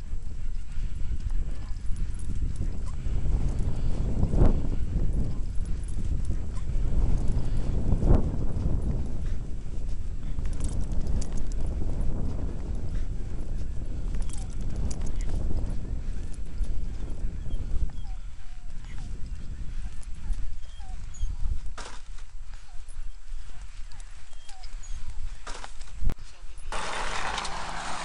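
Wind rumbling on the camera microphone outdoors, with footsteps scuffing in loose sand and a couple of louder thumps early on.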